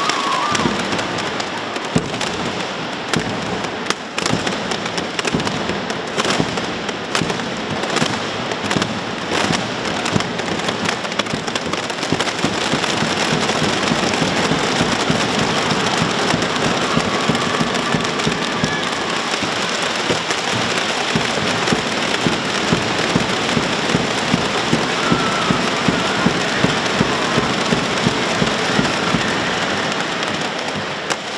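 Many children striking and shaking homemade percussion instruments made from recycled material, together making a dense, rapid crackling clatter that imitates a mascletà firecracker barrage. Separate sharp strikes stand out in the first dozen seconds before it thickens into a continuous roll.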